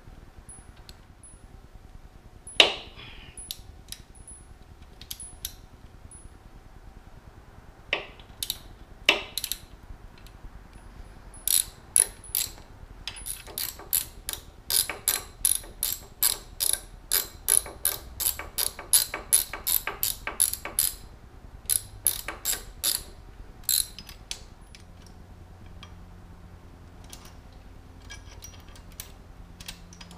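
Socket ratchet turning a T45 Torx bolt on the horn bracket. There are a few scattered clicks and a sharp knock about three seconds in, then a steady run of quick ratchet clicks, about three a second, from around the middle until several seconds before the end.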